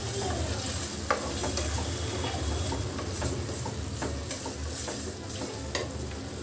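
Chopped tomatoes sizzling in oil in an aluminium kadai while a spatula stirs them, scraping and tapping against the pan in short strokes, with one sharper tap about a second in.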